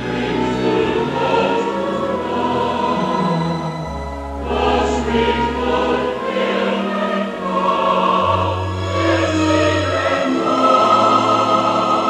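Music with a choir singing over long held low notes that shift every second or two.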